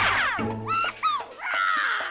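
Several short, high-pitched yelping cries and a longer falling cry near the end, dubbed creature sound effects over background music.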